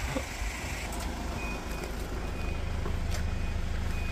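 Forklift running with a steady low rumble, its warning beeper giving a short, faint high beep about once a second from about a second and a half in.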